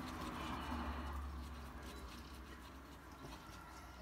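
Watercolour brush working cerulean blue paint onto paper: a faint, soft rubbing, strongest in the first second and a half.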